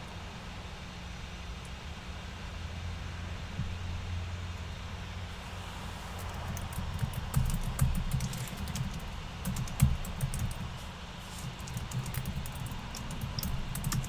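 Scattered light clicks of typing on a computer keyboard, densest in the second half, over a low steady hum.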